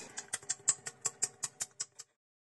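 Handling noise from a hand gripping the camera: a rapid run of small clicks and taps, about six a second, that cuts off suddenly at the end.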